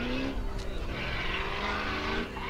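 Lexus IS300 drift car's engine revving steadily as the car comes down the track, its pitch rising slightly.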